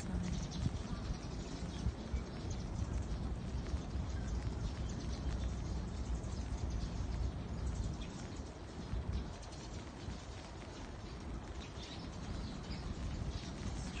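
Rain pattering steadily on an umbrella, a dense run of fine ticks over a low rumble, with a few faint bird chirps.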